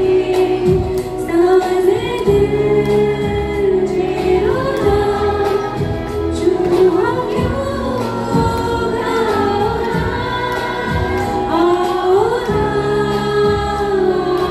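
Amplified live song performance: singing over band accompaniment with a steady beat.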